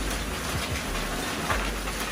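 Foam packing peanuts rustling and pattering as hands dig through a cardboard box full of them and some spill onto the floor, with a few faint light clicks.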